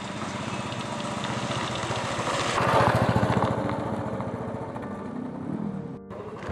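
Motorcycle engine running as the bike rides up and passes close by. It is loudest about halfway through, then fades as it moves away.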